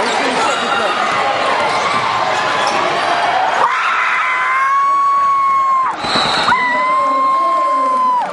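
Gym crowd noise with voices and a basketball bouncing on the court, then about halfway in a scoreboard horn sounds in a long steady blast, breaks off for a moment, and sounds again until near the end.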